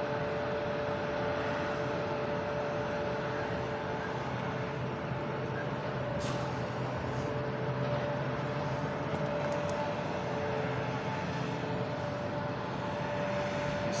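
Steady industrial machine hum from the packaging plant: a constant drone with an unchanging mid-pitched whine over it, holding level throughout.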